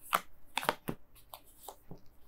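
Tarot cards being drawn from the deck and laid down on a table: a quick string of light card snaps and taps, about seven in two seconds.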